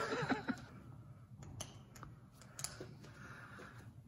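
A few faint, sharp clicks, spaced irregularly, as a plastic tag fastener on a new boxing glove is bitten and tugged off with the teeth, after a brief voice sound at the start.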